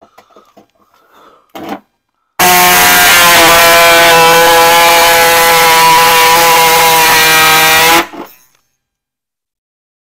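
Pneumatic reciprocating air saw cutting through the fender's sheet metal: a very loud, steady buzzing whine that starts about two and a half seconds in and stops abruptly about five and a half seconds later. A few light handling clicks come before it.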